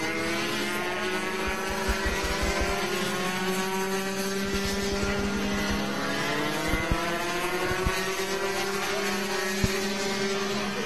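Several Rotax two-stroke kart engines running on the circuit, their notes rising and falling in pitch as the karts accelerate and lift through the corners. A few low knocks come through, the sharpest just before the end.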